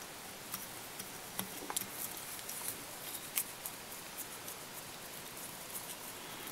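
Faint, scattered small clicks and rustles of hands working fly-tying materials at a vise, over a steady hiss.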